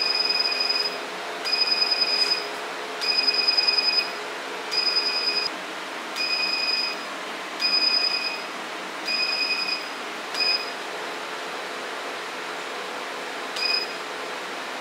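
Hair-removal machine beeping as its handpiece fires. There are about seven beeps, each just under a second long and roughly one and a half seconds apart, then two short blips with a pause of about three seconds between them. A steady hum from the machine runs underneath.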